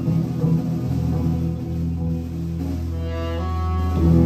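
Live band of saxophones, upright bass, drums and electric guitars playing. A low note is held from about a second in, and higher held notes come in near the end.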